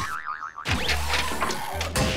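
Cartoon sound effects over music: a short wobbling, warbling tone at the start, then quick rising swooshes and clicks over low bass notes.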